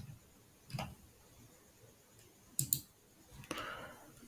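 Computer mouse clicks in a quiet room: one right at the start, one just under a second in, and a quick pair a little past halfway.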